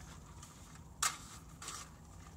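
A drinking straw being unwrapped and handled: faint rustling of the paper wrapper, with one sharp click about a second in.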